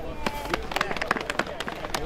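A small crowd clapping, in irregular, scattered claps.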